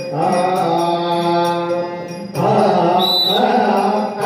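A man singing a Kannada devotional bhajan in a chant-like style over sustained harmonium tones. He holds one long note, then starts a new phrase about halfway through.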